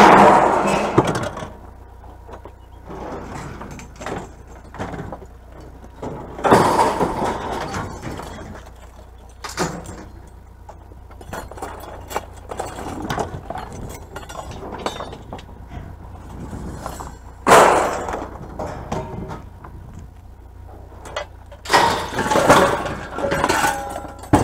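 Scrap metal clanking and crashing as pieces are tossed off a wooden trailer bed onto a scrap pile: several separate loud crashes with quieter rattling and clinking between them.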